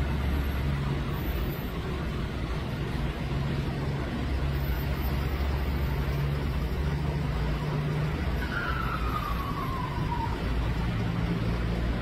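Road traffic at close range: car and light-truck engines idling and creeping, a steady low rumble with a haze of traffic noise. A faint falling squeal sounds briefly about two-thirds of the way through.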